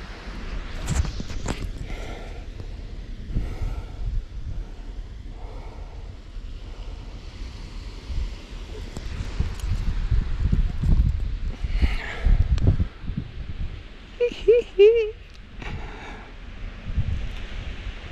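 Wind buffeting a handheld camera's microphone, with handling knocks and faint voice sounds. A short wavering pitched sound comes about three-quarters of the way through.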